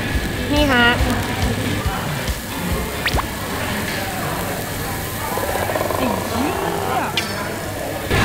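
Background music over a steady sizzling hiss from a hot tabletop grill plate cooking seafood, with a brief spoken phrase near the start.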